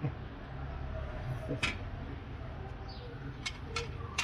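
A metal ladle clinks a few times against a plate and the cutlery on it as broth is poured, over a steady low rumble.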